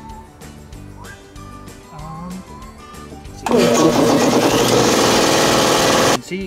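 Porter-Cable electric air compressor starting abruptly about halfway through and running loudly and steadily, its motor and piston pump charging the tank.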